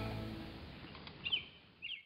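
Music fading out, with a bird chirping in two short bursts of quick falling notes near the end.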